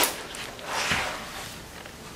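Paper rustle of a coloring book being handled, its pages shifting, with a soft knock about a second in.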